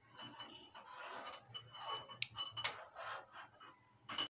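Faint clinking of metal kitchen utensils against dishes and a small aluminium saucepan as a spoon stirs and taps: a run of light strikes with a short ring, the sharpest a little after two seconds in.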